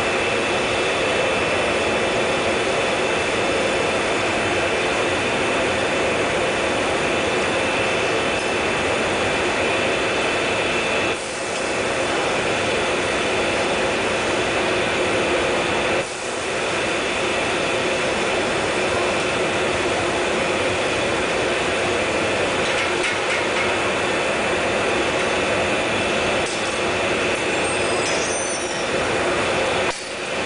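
Steady hiss and hum of glassworks machinery: a rotary glass-forming machine running with its ring of gas burners lit, with two brief drops in level about eleven and sixteen seconds in.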